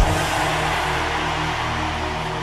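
Sustained low keyboard chord from the church band under a steady wash of congregation noise, opening with a sharp hit.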